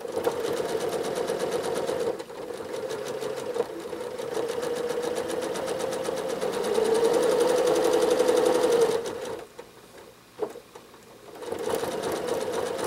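Janome Horizon 7700 sewing machine stitching fast during free-motion quilting, with a brief dip about two seconds in. It runs louder near the end of its run and stops about nine seconds in. After a single click it starts up again just before the end.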